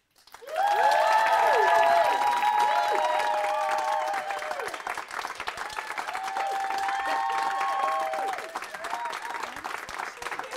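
Studio audience applauding, with whoops and cheers over the clapping. It starts about half a second in, is loudest in the first few seconds and thins out near the end.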